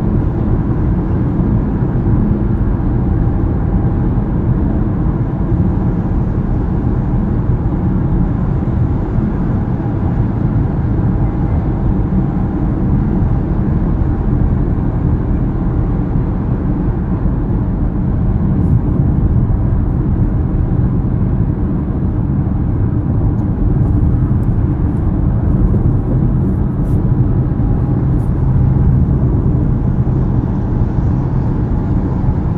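Steady road noise inside a car's cabin at highway speed: a continuous low rumble from the tyres and engine that holds an even level throughout.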